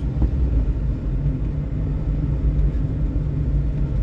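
Car engine and tyre noise heard from inside the cabin while driving slowly along a street: a steady low rumble.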